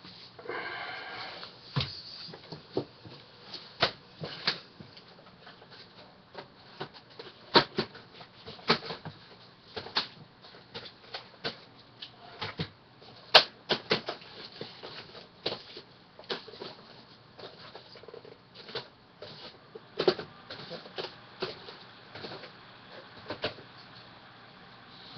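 Irregular clicks and clacks of plastic VHS tape cases being picked up, handled and set down, a few louder knocks among them.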